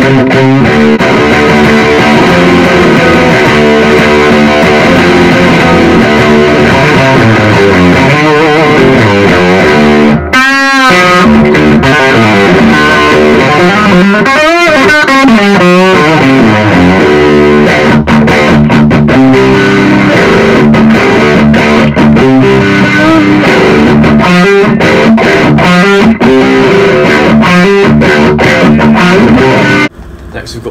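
Electric guitar played through a Blackstar ID:CORE 100 combo amp on its Super Crunch voice: a distorted, driven tone playing continuous riffs and lead lines, with bent, wavering notes about a third and halfway through.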